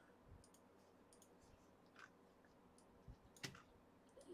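Near silence with a few faint, scattered clicks, the clearest near the end: a computer mouse being clicked.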